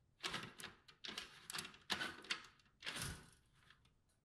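Horizontal window blinds being raised by hand, the slats clattering in four separate pulls that fade out near the end.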